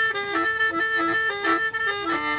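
Đing năm, a gourd mouth organ with bamboo pipes, playing a quick repeating tune of short reedy notes against steadily held higher tones, several pipes sounding together.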